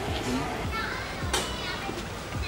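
Faint chatter of several voices over background electronic music with a steady kick-drum beat.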